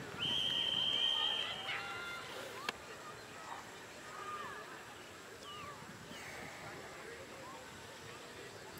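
Referee's whistle: one long, steady blast lasting about a second and a half, signalling a try scored by the posts. It is followed by faint shouts and voices across the field.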